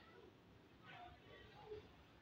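Near silence: room tone with faint, distant sounds, including a short faint call about a second in.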